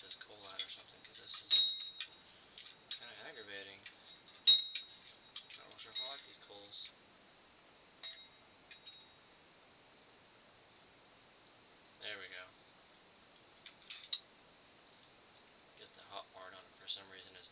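A hookah being handled: sharp metallic clinks of tongs and coal against the bowl and glass, loudest twice in the first five seconds, with short gurgling bursts from the water vase in between.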